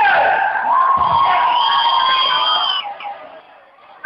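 Crowd shouting and cheering, with one long held cry standing out from about a second in and fading near three seconds.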